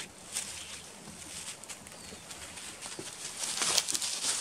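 Boots scuffing on dry forest floor, then stepping onto the rungs of a wooden ladder, with clothing and backpack rustling; a burst of louder scuffs and knocks comes near the end as the climb begins.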